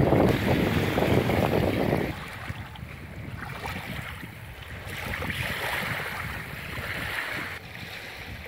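Wind buffeting the microphone, a heavy low rumble for about the first two seconds that then drops to a lighter rush, with the wash of small waves at the water's edge.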